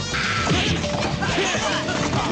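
Action-show sound effects: a run of crashes and hits starting suddenly just after the beginning, over a quieter music bed.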